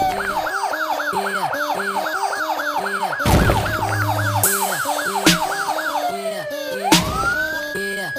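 Police siren in yelp mode, a quick rising-and-falling whoop about three times a second, slowing near the end into a long wail that falls and then rises again. Under it runs intro music with a steady beat and a few heavy hits.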